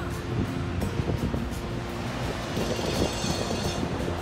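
Wind buffeting the microphone over the wash of breaking ocean surf, with faint background music underneath.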